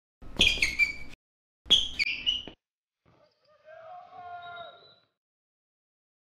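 Short logo sound sting: two sharp, bright bursts about a second apart, then a fainter held tone that fades out.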